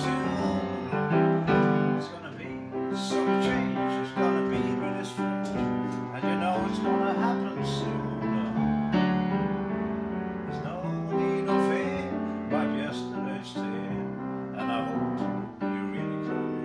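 Upright piano played steadily, a run of chords and melody notes with frequent new onsets.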